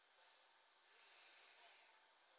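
Near silence: dead air on an answering-machine message, with only a faint hiss.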